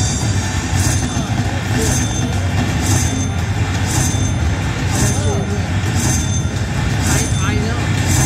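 Aristocrat slot machine's bonus-win payout counting up, a bright burst of sound repeating about once a second as each prize symbol is added to the win. Under it, a low steady hum and background chatter.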